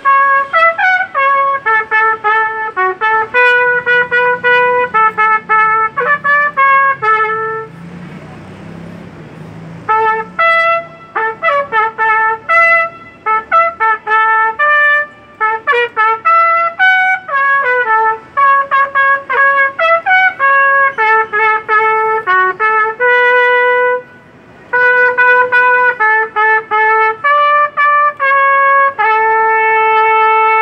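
Solo trumpet playing a melody of short, quickly changing notes, with a pause of about two seconds near the start and a brief break later, ending on a long held note.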